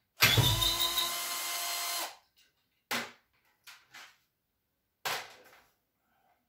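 Cordless drill-driver running for about two seconds, its pitch rising briefly as it spins up, while the water pump's housing is being unscrewed. Two short knocks follow.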